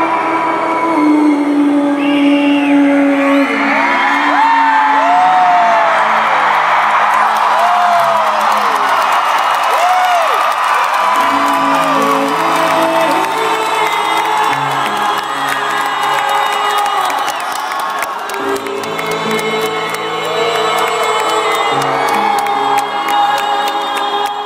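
A live band holds sustained chords that change every couple of seconds, under a crowd cheering and whooping. Sliding whoops and whistles stand out in the first half.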